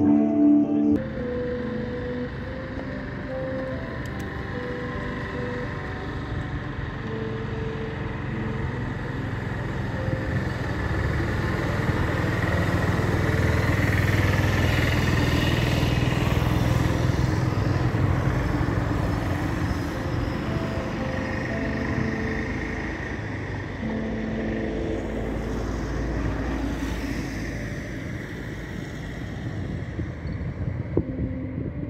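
City street traffic: cars passing on a road, growing louder to a peak about halfway through and then easing off, with faint music underneath.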